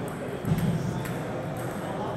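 Table tennis hall ambience between points: faint ticks of ping-pong balls from neighbouring tables over background voices, with a short voice sound about half a second in.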